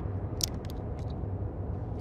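Steady low hum of a van's cabin, with a few short plastic crackles and clicks about half a second in as a plastic water bottle is handled.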